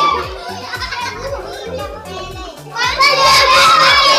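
A girl reciting a Hindi poem aloud in a sing-song, chant-like voice. She pauses for a couple of seconds while softer children's voices carry on in the room, then picks the recitation up again about three seconds in.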